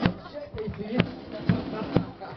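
A uniformed marching band playing as runners go past, with sharp thumps about twice a second and crowd voices underneath.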